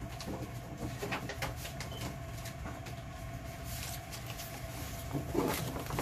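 Faint handling sounds of a paper junk journal being fetched and set on a table: a few light taps and rustles in the first couple of seconds, over a steady low hum.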